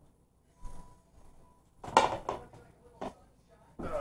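A plate of cooked meat set down on a wooden table: a few separate knocks and rustles, the loudest about two seconds in, with handling noise at the table near the end.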